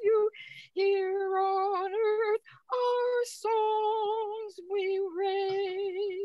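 A woman's voice singing a slow hymn melody solo and unaccompanied, holding long notes with vibrato and breaking twice for breath.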